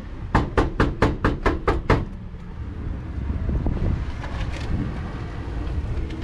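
Rapid knocking on a corrugated sheet-metal gate: about eight quick ringing raps, roughly four a second, over a second and a half. Then low, steady street traffic noise.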